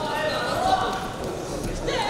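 Raised voices shouting and calling out over a steady crowd murmur in a large, echoing arena hall.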